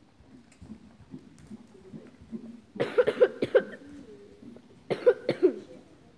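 Two short bouts of coughing, each a few quick coughs in a row: the first about three seconds in, the second near the end.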